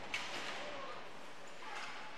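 Faint ice-hockey rink ambience: a low steady hiss of the arena, with one short knock just after the start.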